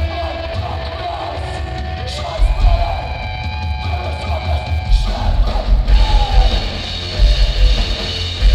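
Sludge metal band playing live: sustained distorted electric guitars with a sliding, rising note about two seconds in, over heavy pulsing low bass.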